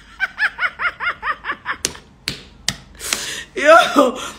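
A woman laughing in a quick run of about eight short "ha"s, then three sharp taps, and a louder breathy laugh near the end.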